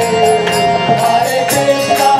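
Kirtan music: a harmonium and group voices chanting, over a steady percussion beat of about two strokes a second.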